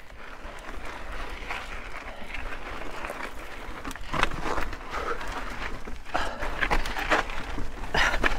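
Mountain bike crawling over boulders on a rocky technical climb: tyres scuffing and grinding on rock, with a few sharp knocks and clicks from the bike about halfway through and again near the end.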